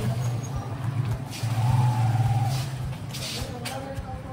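A motor vehicle's engine running with a steady low hum, with a short hiss about three seconds in.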